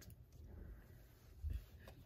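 Scissors cutting into plastic shrink-wrap: faint snips and crinkles, with a soft bump about one and a half seconds in and a small click just after.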